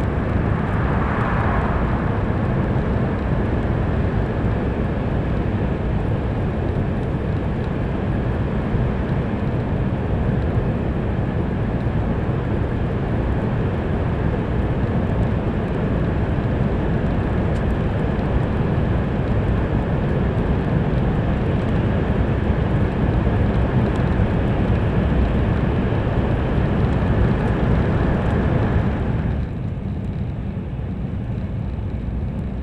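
Cabin noise of an N700-series Shinkansen running at speed through a tunnel: a loud, steady rumble and rush with a faint steady high tone. The noise drops suddenly near the end as the train comes out of the tunnel.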